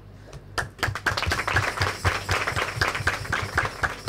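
A group of people clapping their hands, starting about half a second in as a dense patter of claps.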